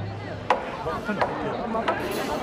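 Three sharp wooden clacks, about two-thirds of a second apart, from the wooden percussion of a festival procession, over crowd chatter.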